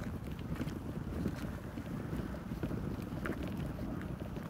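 Wind buffeting the phone's microphone: a steady low rumble with a few faint clicks, as the phone is carried along outdoors.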